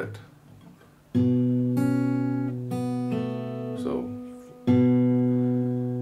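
Acoustic guitar fingerpicked: a low bass note plucked about a second in, with higher strings added one after another over the next two seconds and left ringing. A second low note is plucked near five seconds and rings on.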